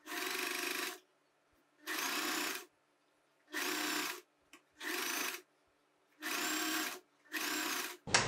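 Domestic electric sewing machine stitching in six short bursts of under a second each, stopping between bursts as the curved neckline is guided round under the foot.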